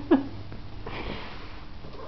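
A woman's short laugh at the start, then a breathy, sniff-like exhale through the nose about a second in.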